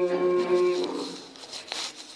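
A man's voice holding one long, steady chanted note that ends about a second in: the drawn-out final syllable of an Arabic supplication recited in Quranic chant. A brief faint noise follows near the end.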